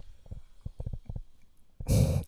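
Handling noise from a handheld microphone being lifted toward the mouth: a quick, irregular run of soft low thumps and rubs that dies away past the middle, followed by a breath and the start of speech near the end.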